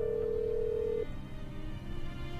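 A telephone ringback tone, a steady beating burr heard through the phone, stops about a second in. Underneath is a soft music score of held notes.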